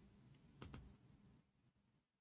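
Near silence with two faint, quick clicks close together about two-thirds of a second in.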